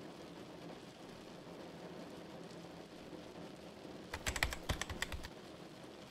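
A faint low hum, then about four seconds in a quick run of fast computer-keyboard typing, a rapid string of key clicks lasting about a second.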